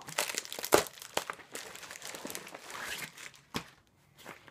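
Plastic mailer pouch being opened and handled: irregular crinkling with some tearing, loudest about a second in and thinning out near the end.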